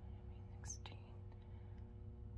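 Quiet room tone with a low steady hum, and a brief soft whisper from the person holding the camera, followed by a small click, a little under a second in.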